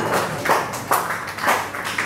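Sparse applause from a small audience at the end of a live song, separate claps about twice a second.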